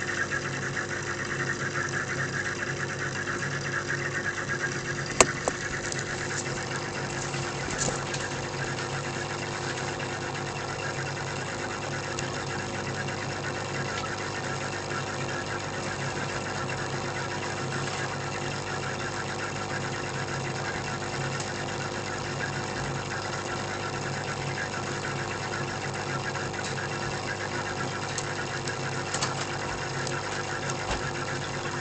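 Aquarium pump humming steadily, with the hiss and bubbling of aerated water in the tank. A single sharp click about five seconds in.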